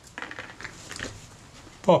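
Several faint, light clicks and scrapes of a wooden toothpick prying a camera's metal focus scale ring out of its slot around a Kodak Retina Reflex lens mount.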